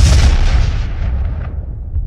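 A loud, deep boom with a long rumbling tail. The high end dies away within about a second and a half, and the low rumble carries on fading.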